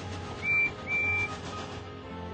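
Small tank engine's steam whistle blowing two high toots, a short one and then a longer one, over background music.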